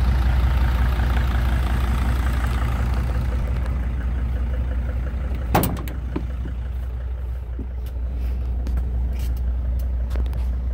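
Sprinter van engine idling steadily on its first run. About halfway through there is a sharp knock, and after it the engine sounds slightly quieter and duller, heard from inside the cab.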